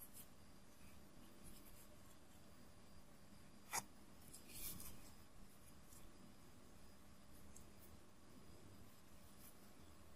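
Near silence with faint handling noise: black yarn drawn by a needle through crocheted cotton fabric, with one sharp click about four seconds in and a brief rustle just after it.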